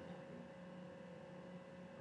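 Faint steady electrical hum with room tone, holding one tone throughout.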